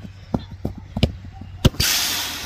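A few sharp knocks and thuds, the loudest about one and a half seconds in, followed near the end by a loud burst of rushing noise, like wind or handling on the phone's microphone.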